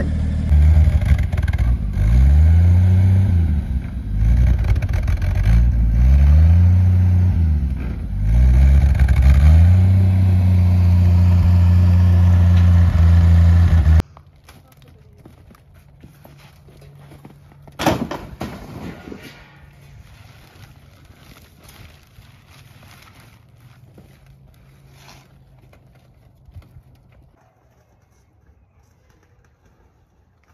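A motor engine revving up and falling back about three times, then held at high revs, cutting off abruptly about halfway through. After it, quieter rustling with a single sharp clatter a few seconds later, fitting scrap boards being tossed onto a debris pile.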